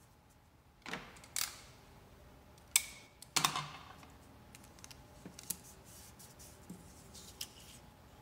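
Clear sticky tape and construction paper being handled: several short scratchy rips and rustles, the loudest a little over three seconds in, then faint taps and rustling as the tape is pressed down.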